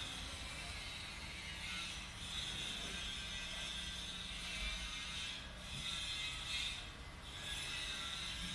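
Faint construction noise from outside, a steady mechanical hum with a high hiss-like whine that swells a couple of seconds in and briefly drops away twice near the end.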